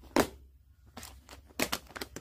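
Handling noise from a saw chain being moved in the hand. There is one sharp click about a fifth of a second in, then a short cluster of light metallic clicks and rattles from the chain links in the second half.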